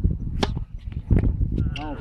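Tennis ball struck by a racket: a sharp pop of a serve hit close by about half a second in, then a second ball impact less than a second later as the ball reaches the far side. A short shout of "vamos" comes near the end.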